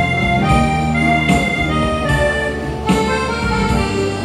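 Karaoke backing track playing an instrumental passage: a melody of long held notes over bass and percussion.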